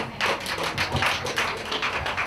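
Scattered hand clapping from a small audience: a quick, irregular run of claps.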